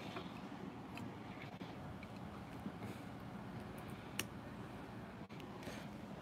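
Quiet room tone with a few faint clicks and taps of a barrel power plug being fitted into a small circuit board. The clearest click comes about four seconds in.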